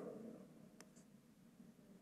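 Near silence: room tone with two faint, short clicks a little under a second in.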